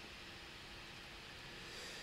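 Faint room tone: a steady low hiss with a faint hum, and no distinct sound event.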